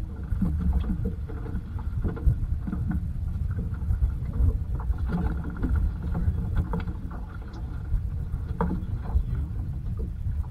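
Steady low rumble of wind and water around a small boat at sea, with scattered light knocks and clicks of gear on deck.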